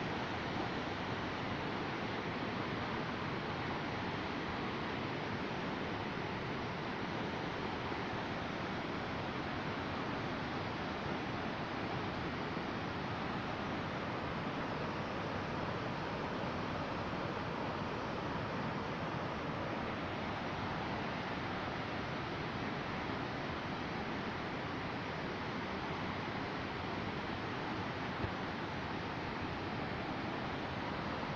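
Steady, unbroken rushing of Victoria Falls and the Zambezi River churning in the gorge below.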